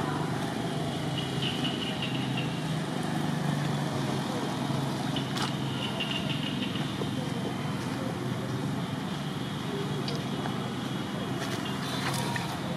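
Steady outdoor background of distant road traffic with a faint murmur of voices, and a few faint brief clicks.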